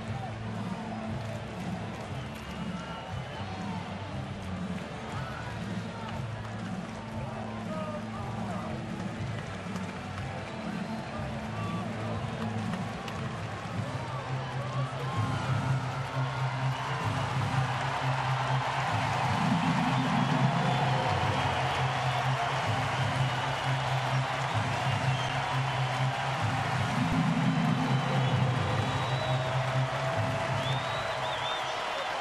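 Ballpark PA music with a steady low beat playing over a stadium crowd. About halfway through, the crowd noise swells and stays louder.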